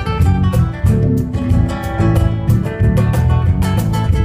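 Acoustic guitar strummed in a steady rhythm, a few strokes a second, in an instrumental passage of a song with no singing.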